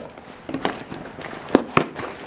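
A taped cardboard parcel being handled and torn open: crackling of packing tape and cardboard, with two sharp snaps about one and a half seconds in.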